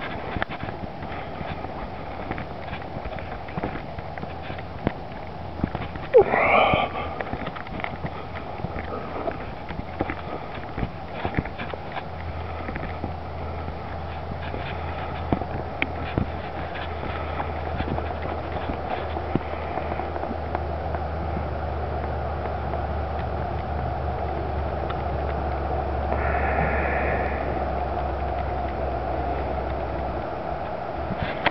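Footsteps and small handling clicks from walking across grass, with a low wind rumble on the microphone that grows from about twelve seconds in. One short call rises and falls about six seconds in.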